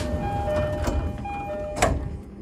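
Train door chime: a two-note high-low chime repeated in pairs, over a steady low rumble, with a sharp click near the end.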